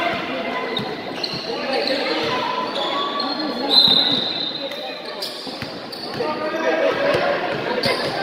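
A basketball bouncing on an indoor court during play, echoing in a large metal-walled hall, with players and spectators calling out. A brief high squeal about four seconds in is the loudest sound.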